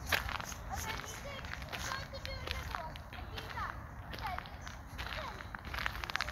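Voices of people talking in the background, with footsteps and occasional clicks, over a steady low rumble.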